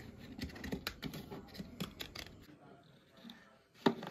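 Light scrapes and small taps of rigid PVC plastic pieces being handled and fitted together by hand, dying away after a couple of seconds, with one sharp tap just before the end.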